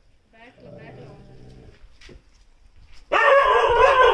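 A Chippiparai puppy yapping and barking aggressively, with short yips in the first second; about three seconds in a much louder, drawn-out bark or yelp breaks out and runs on.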